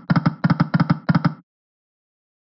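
Video slot game's reel sound effect: a rapid run of clattering ticks, about seven a second, that stops about a second and a half in as the five reels come to rest.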